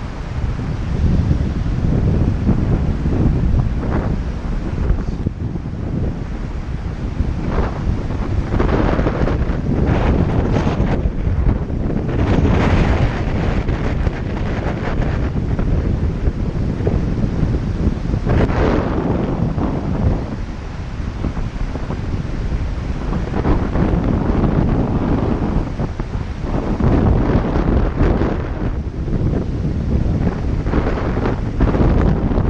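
Strong wind buffeting the microphone in gusts, over the rush of river current.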